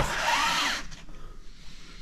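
A pleated blackout blind being slid along a patio door by hand, its fabric and rail rubbing along the guides with a short scraping rush that dies away after about a second.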